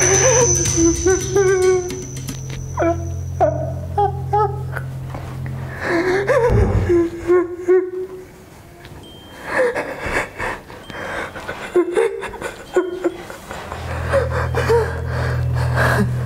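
A badly injured man moaning and gasping in pain over a low droning film score. A thin high ringing tone runs through the first few seconds. The drone drops out for several seconds in the middle, then returns near the end.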